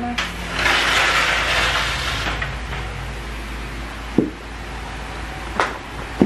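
A door being opened by hand: a rush of scraping, rattling noise in the first two seconds, then two sharp knocks later on.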